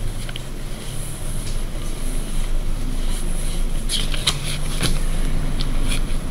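A steady low background rumble and hum, with a few faint short clicks about four to five seconds in.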